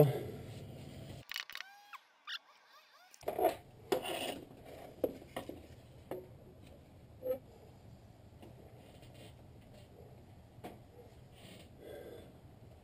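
Scattered light knocks, clicks and scrapes of hand tools and a long bar against metal as an alternator is worked into its mounting bracket. A brief silent gap comes about a second in, and the knocks follow irregularly over a faint steady hum.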